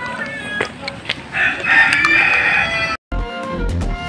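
A rooster crowing once, one long call of about a second and a half, followed after a brief break near the end by music.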